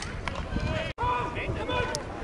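Voices of rugby players and sideline spectators calling out across the field, with a brief total dropout in the sound about a second in.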